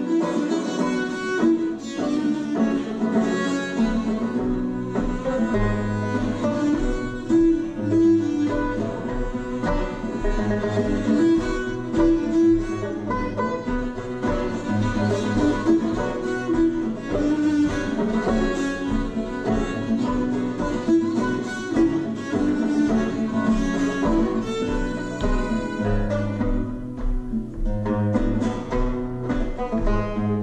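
Instrumental folk break played live by a bowed viola da gamba carrying the melody over plucked guitar and tenor banjo accompaniment, with a steady rhythmic bass line.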